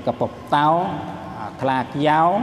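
Only speech: a man's voice lecturing.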